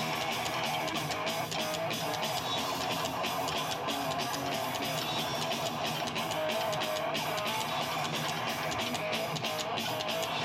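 Live band playing amplified music: strummed guitars over drums keeping a steady beat.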